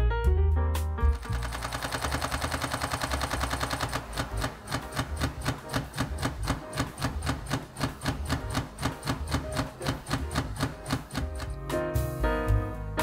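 Olympus E-M5 Mark III mechanical shutter firing in a continuous high-speed burst: rapid, even clicking from about a second in, slowing after about three seconds to a slower, uneven click rate as the buffer fills and the camera writes Raw+JPEG files to the UHS-II card. The burst stops just before the end.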